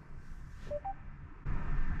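Mercedes-Benz MBUX infotainment system sounding a short two-note rising chime about two-thirds of a second in, acknowledging a spoken command. A low cabin hum grows louder near the end.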